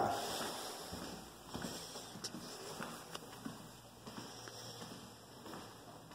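Quiet footsteps on a tile floor, with a few light irregular ticks and knocks, over low room noise.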